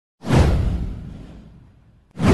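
A whoosh sound effect for an animated intro. It sweeps in sharply about a fifth of a second in, falling in pitch over a deep low rumble, and fades away over about a second and a half.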